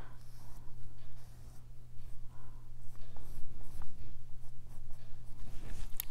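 Paintbrush working paint into a canvas shopping bag in repeated, irregular strokes, over a steady low electrical hum.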